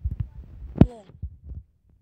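Low irregular thuds of a handheld phone camera being carried while walking: handling and footfall knocks on the microphone. A sharp knock and a brief voice sound come just under a second in.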